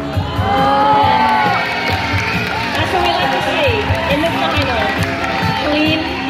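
Music with a steady beat playing under a crowd cheering and calling out.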